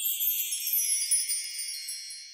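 A high, shimmering run of wind chimes opening a song's intro, slowly dying away.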